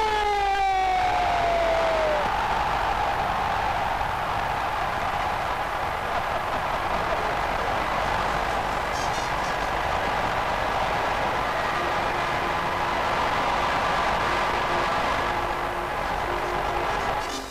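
A comic falling whistle-like tone sliding down in pitch over the first two seconds, then a steady, even rush of noise for the rest of the time.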